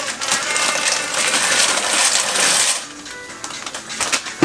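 Dry food pouring from a plastic packet into a pot, a rattling, rustling pour that lasts nearly three seconds and then stops, over background music.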